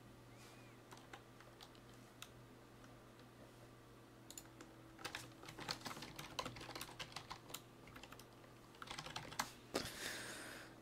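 Typing on a computer keyboard: quiet key clicks, a few scattered at first, then a quick continuous run of typing from about four seconds in until near the end.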